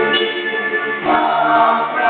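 Worship song sung by many voices together over music, the notes held long with a change of phrase about a second in.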